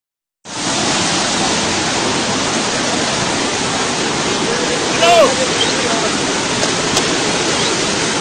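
Muddy floodwater rushing steadily across a road, a continuous loud rush of water. A person's voice calls out briefly about five seconds in.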